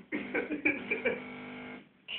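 A voice, bending at first and then holding one steady pitch for about a second, then cutting off sharply.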